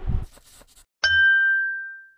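A single bright ding chime about a second in, one clear ringing tone that fades out over about a second. Just before it, at the very start, a short low thump.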